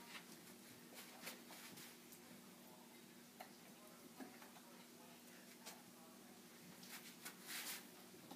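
Near silence: room tone with a faint steady hum, a few faint scattered ticks, and a brief soft rush near the end.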